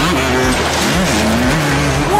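Dirt-track racing motorcycle engines running hard, their pitch rising, holding and falling as the throttle opens and closes.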